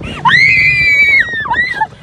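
A roller coaster rider's long, high-pitched scream, held for about a second, then a shorter cry that rises and falls.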